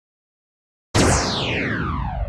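A falling-pitch sound effect starts suddenly about a second in. A whistle-like tone slides steadily down in pitch over a low rumble and is still fading at the end.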